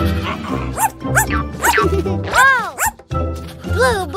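A cartoon puppy's barks and yips, several short rising-and-falling calls with the loudest about halfway through, over light children's background music.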